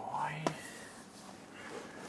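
A man's brief low murmur, followed about half a second in by a single sharp click, as a MacBook laptop lid is shut. After that there is only faint room tone.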